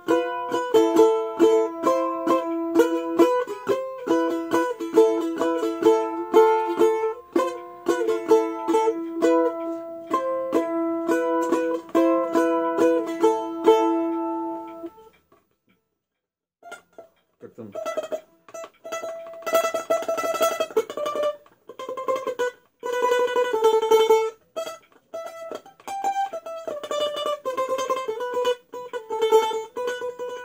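Six-string balalaika, its strings in unison pairs, strummed with the fingers rather than a plectrum: repeated chords with ringing notes. The playing breaks off about halfway through and starts again a couple of seconds later with faster, denser strumming.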